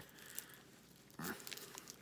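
Faint crinkling of thin plastic wrap being picked at and torn open from a small pack of cards, with sharper crinkles from a little over a second in.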